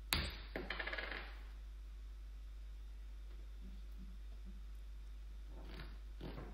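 A roll of tape set down on a hard tabletop: a sharp knock followed by a quick rattle that dies away within about a second. Near the end there is a faint rustle of rope being handled, all over a steady low hum.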